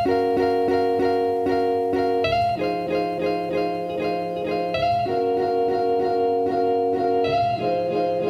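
Instrumental background music: plucked-string notes repeating about twice a second over sustained chords, with the chord changing a few times.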